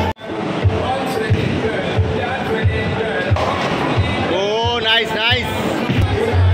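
Music with a steady thumping beat, after a brief cut-out right at the start. A voice glides up and down for about a second near the end.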